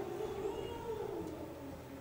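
A single voice singing a held note that wavers and then slides slowly downward.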